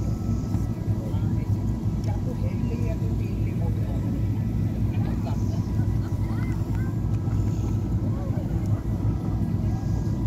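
Steady low rumble of a boat's engine running, with faint distant voices over it.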